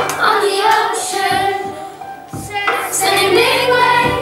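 A group of primary-school children singing a song together with musical accompaniment; the singing drops away briefly a little past halfway and then comes back in.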